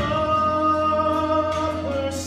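Male solo vocalist singing a Southern Gospel song into a microphone, holding one long note that steps down near the end, over instrumental accompaniment.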